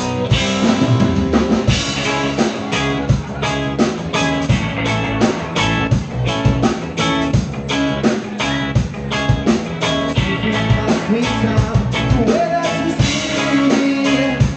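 Live rock band playing a song: electric guitars, bass and a drum kit keeping a steady beat.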